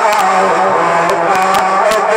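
A ground fireworks fountain spraying sparks: a steady hiss with sharp crackles, over a wavering melodic line played through a loudspeaker system.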